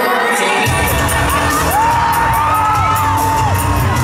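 Arena crowd screaming and whooping, many high voices rising and falling. Less than a second in, a bass-heavy intro track kicks in with a steady beat under the cheers.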